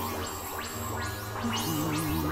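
Experimental electronic synthesizer music: layered droning tones with a wavering, vibrato-like tone that drops out and comes back near the end. The bass notes change twice, and repeated sweeping glides run through the high end.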